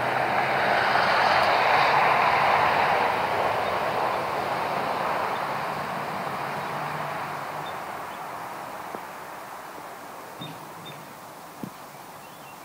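A steady rushing noise that is loudest about two seconds in and then fades slowly away, with a few faint high chirps near the end.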